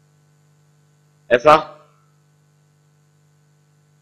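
Faint, low, steady electrical hum, with one short spoken word about a second and a half in.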